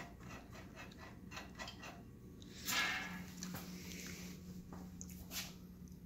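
Faint small clicks, then a short rustle a little before halfway, after which a low steady hum sets in and holds: a fluorescent light fixture's GE replacement ballast running.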